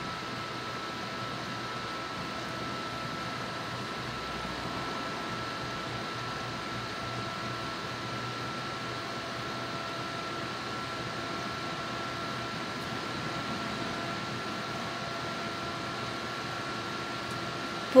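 Steady machine hum and hiss with several faint steady tones, unchanging throughout.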